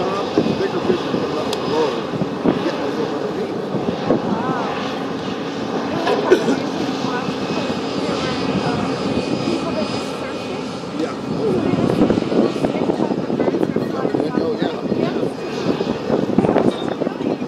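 A steady engine drone, with indistinct voices over it.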